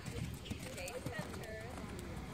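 Hoofbeats of a chestnut horse cantering close by on arena dirt, with voices talking in the background.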